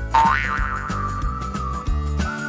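Cartoon boing sound effect: a quick rising-and-falling tone about a third of a second in, trailing into a long held tone that slowly sinks, over background music with a steady bass.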